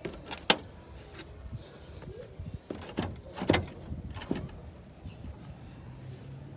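Irregular knocks and scuffs from someone moving over corrugated fibre-cement roof sheets, a few sharp knocks standing out, the loudest about half a second in and again about halfway through.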